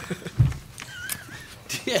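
People laughing, with one high wavering laugh near the middle. A short low thump comes about half a second in.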